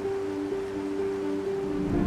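Background music of held, slowly changing notes over a steady rushing noise like stormy ocean surf.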